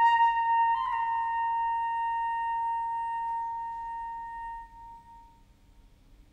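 Solo concert flute holding one long high note, which moves slightly higher about a second in and then fades away near the end.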